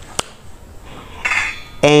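A single sharp metallic clink a fraction of a second in, a utensil knocking the stainless steel cooking pot, followed about a second later by a brief faint metallic clatter. A woman starts speaking near the end.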